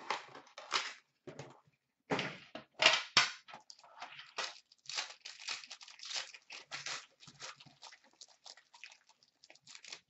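Hands opening a metal card tin and tearing open and crinkling the plastic wrapper of the pack inside: an irregular run of crinkles, rustles and small clicks, loudest about two to three seconds in.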